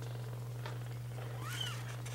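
A three-and-a-half-week-old kitten mewing once, a short high call that rises and falls, about one and a half seconds in, over a steady low hum.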